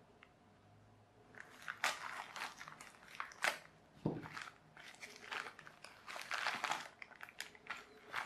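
Plastic mailing bag and paper customs slip crinkling and tearing as a small parcel is opened by hand, in irregular rustling bouts after a quiet first second. One soft knock about four seconds in.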